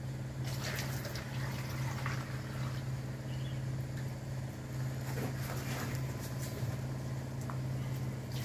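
A motor running with a steady low hum, joined by a few faint knocks.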